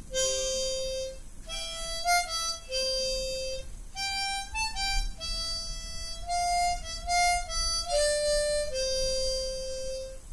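Hohner harmonica in concert C played solo: a simple melody of single reedy notes, some held about a second, others shorter and quicker.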